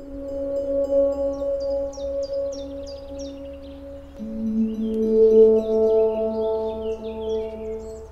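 Soft ambient background music: a sustained drone chord that shifts to a lower chord about four seconds in. Short high chirps like small birds' calls repeat above it, about two or three a second at first.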